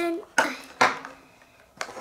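Hard plastic clicks as a Mini Brands surprise ball's halves are pried open: two sharp clicks under half a second apart, then another near the end.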